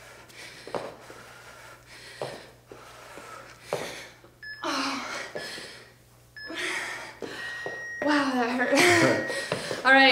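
Soft thuds of feet landing on the floor during jump squats, then heavy breathing with two loud breaths, and voices near the end.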